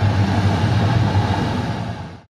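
Steady engine and airflow noise inside an aircraft cabin: a loud low hum under an even rush.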